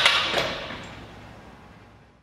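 Sheet-metal vacuum lifter setting down its part: a couple of metal knocks over a short hiss of air, dying away toward the end.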